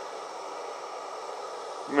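Gas canister backpacking stove burning with its flame turned down low, a steady, even hiss.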